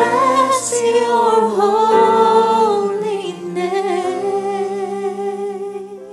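Slow sung worship music: a voice holding long notes with vibrato, fading away near the end.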